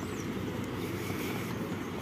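Steady low rumble of outdoor background noise, with a faint high chirp right at the start.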